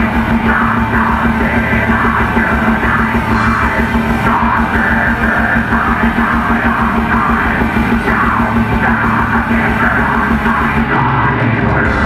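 Metal band playing live: distorted electric guitars and bass over fast, dense drumming, with a vocalist yelling harsh vocals over the top.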